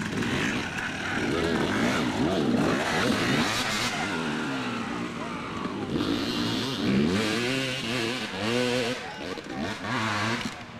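Dirt bike engines revving up and down in short, repeated throttle blips as riders pick their way over a log obstacle, with several bikes overlapping.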